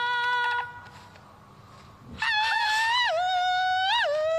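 A high wordless sung "ah" call, one held note that stops just after the start. After a pause of about a second and a half, the voice comes back on a higher wavering note and steps down in pitch twice.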